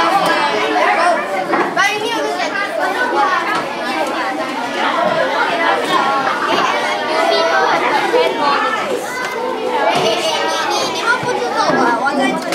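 A group of children talking over one another in lively chatter, several voices overlapping throughout.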